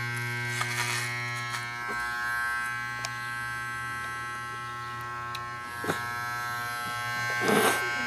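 Electric hair clippers buzzing steadily as they cut a child's hair, with a few light clicks from the blades against the head.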